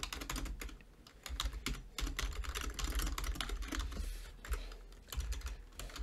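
Typing on a computer keyboard: a run of quick key clicks with a couple of brief pauses.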